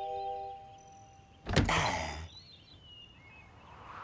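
Cartoon sound effect of window casements being flung open: one sudden bang with a short rushing tail about a second and a half in, after a held musical chord fades out. A few faint chirps follow.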